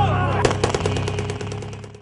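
Closing bars of a rap track: about half a second in, a sharp crack starts a rapid rattle of cracks, about a dozen a second, over a steady bass, fading out toward the end.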